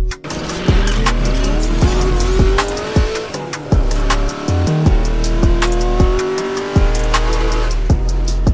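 Electronic intro music with a steady thumping beat, layered with a race-car engine sound effect that revs up and rises in pitch twice.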